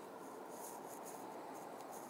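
Faint, steady outdoor background noise with light, irregular scratchy rustling.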